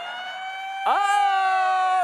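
Siren sound effect: a wailing tone rises in pitch and levels off, then a second, louder steady tone cuts in about a second in.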